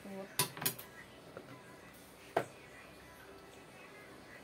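A kitchen knife clacking against a plastic cutting board: two quick sharp knocks near the start and a single louder one about two and a half seconds in.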